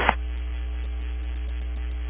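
Steady electrical hum, with a faint steady higher tone on top, on an aviation radio frequency feed between transmissions. It has the thin, cut-off sound of a radio channel.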